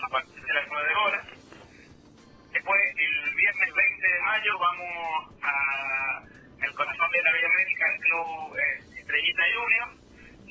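Speech only: a man talking, his voice thin and narrow like a phone line.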